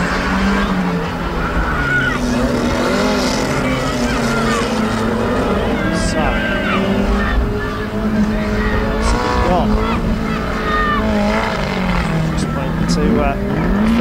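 Banger-racing car engines revving hard, their pitch rising and falling, as a two-litre banger spins its wheels on the shale in a cloud of tyre smoke. A few short sharp clacks come through.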